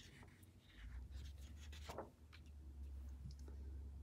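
Faint rustle of a paper picture-book page being turned, with a soft flap about two seconds in.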